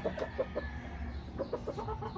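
Chickens clucking, short calls in quick runs.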